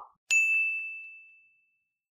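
A single high, bell-like ding sound effect that strikes once and rings out, fading away over about a second and a half.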